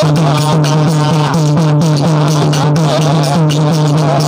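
Live devotional bhajan music. A man sings with a wavering voice over a steady low drone, while a two-headed hand drum and small hand cymbals keep a regular beat.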